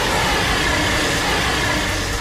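Steady rushing noise with a faint high tone running through it, from a Dragon Eye backpackable drone's electric-driven propellers running as it is launched.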